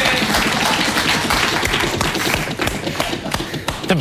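Game-show prize wheel spinning, its pointer flapper clicking rapidly against the wheel's pegs, the clicks slowing near the end.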